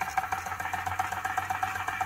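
Wilesco D305 model steam engine running on compressed air. It starts as the air is turned on and runs with a rapid, even beat while it drives its water pump dry through the chain.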